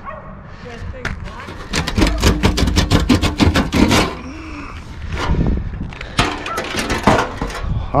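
A stiff plastic sheet covering a chimney top crackling and clicking as it is lifted and bent back by hand. There is a dense run of crackles about two to four seconds in, and more near the end.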